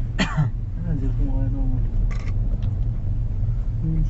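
Short bits of voices over a steady low rumble from the moving cable car gondola, with a brief hiss about halfway through.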